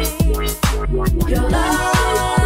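UK bassline dance track playing in a DJ mix: heavy bass under a steady kick drum, with melodic and vocal lines above. The loudness dips briefly just past halfway.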